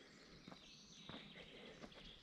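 Near silence: faint woodland ambience with a few faint clicks and a faint, high, steady tone.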